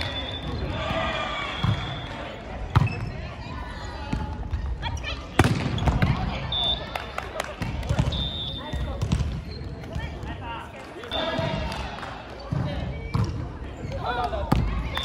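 Volleyball being played in a gym hall: players' voices calling out, and several sharp smacks of the ball being hit, the loudest about two and a half and five seconds in.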